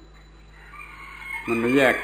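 A faint, drawn-out animal call starts about a third of the way in and rises slightly, and a man's speaking voice overlaps it from about three quarters of the way in.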